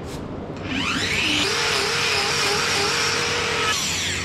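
Angle grinder with a hoof-trimming disc spinning up with a rising whine about a second in, running steadily, then winding down near the end.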